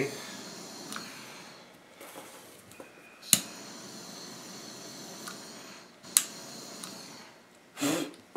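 Small handheld butane torch hissing steadily as its flame melts the cut ends of synthetic rope to stop them fraying. Two sharp clicks about three seconds apart.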